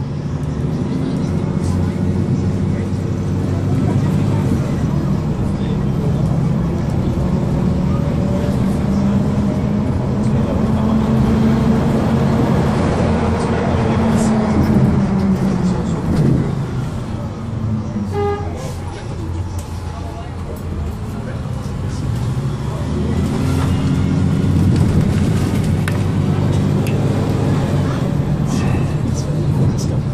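Articulated Van Hool city bus heard from inside: its diesel engine rises in pitch as the bus accelerates, drops back just past halfway, then rises again as it pulls away once more. A short beeping tone sounds just past the middle.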